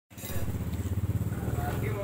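A small engine running with a low, steady drone, loudest in the first second and a half and then fading, under faint voices.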